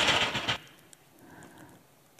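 A brief rustle of handling noise in the first half second, then quiet room tone.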